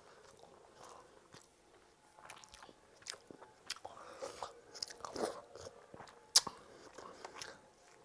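Close-miked eating sounds: chewing and wet mouth noises as a boy eats panta bhat, watery soaked rice, by hand. A sharp click a little over six seconds in is the loudest sound.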